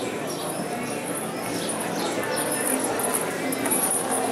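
Indistinct voices in a large indoor arena, mixed with horses and cattle moving on the sand at a steady level.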